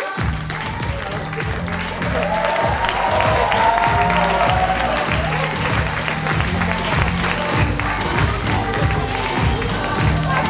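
Music with a steady, heavy beat kicks in at the start, with a melody joining about two seconds in, over an audience applauding.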